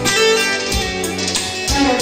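Azerbaijani ashiq music: a long-necked saz being plucked and strummed, accompanied by a Korg electronic keyboard.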